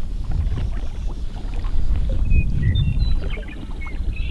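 Low, rumbling noise of water and wind around a float tube on a lake, with a few faint, short high chirps in the second half.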